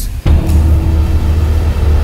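Background music score with a deep, sustained bass drone and held notes. It drops out for a moment just after the start, then comes back louder.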